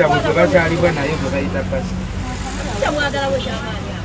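A man talking, with a steady low drone beneath the voice.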